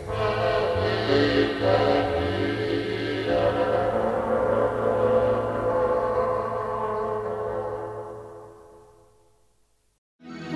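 Slow ambient instrumental music with long held tones, fading out to silence over the last few seconds.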